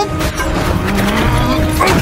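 Action-film fight soundtrack: a loud, dense mix of score music and fight sound effects, with sliding pitched sounds over a low rumble and a sudden hit near the end.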